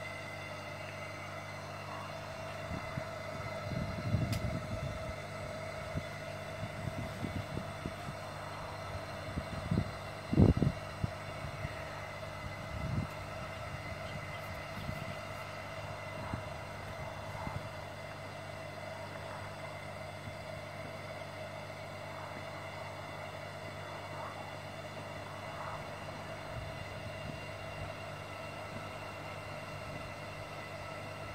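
Aquarium diaphragm air pumps running steadily with a constant mains hum, blowing air into an inflatable paddling pool. A few low knocks come through, the loudest about ten seconds in.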